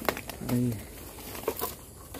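Dry leaves and twigs rustling and crackling as a person pushes through fern undergrowth, with a sharp snap at the start and two more about one and a half seconds in. A short voiced sound from a man about half a second in.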